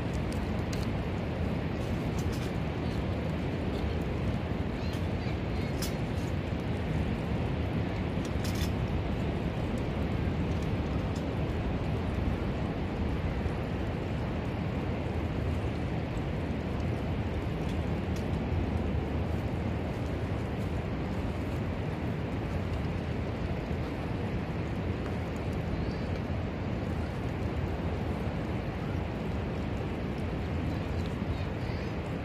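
Steady low rumbling noise of wind on the microphone on an open beach, with a few faint clicks of wooden kindling being handled in the first several seconds.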